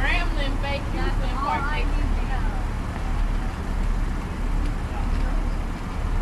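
Steady low rumble of outdoor road-traffic noise, with faint voices talking during the first two seconds.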